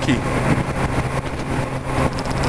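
Motorcycle engine running steadily at a cruise of about 82 km/h, a low even hum under the rush of wind over the helmet-mounted microphone.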